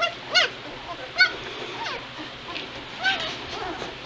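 Two-week-old White Shepherd puppies squealing and whining: about five short, high-pitched cries that rise and fall in pitch, the loudest about a second in.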